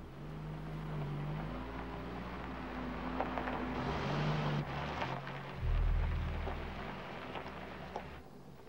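A Porsche's engine running low as the car creeps forward, with a rush of noise swelling about four seconds in and a louder low rumble about six seconds in.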